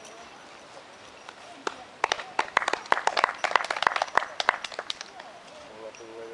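A small group clapping: scattered, irregular hand claps that start about two seconds in and die away around five seconds in.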